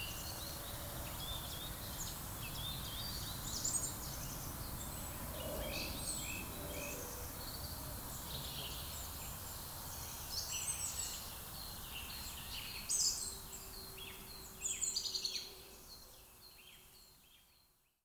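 Many birds chirping and calling at once, in quick high calls with a few louder bursts, over a low, steady outdoor rumble. The sound fades out over the last few seconds.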